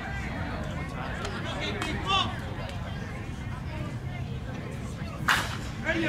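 A slowpitch softball bat hits the ball with a single sharp crack about five seconds in. Distant voices of players and spectators can be heard throughout.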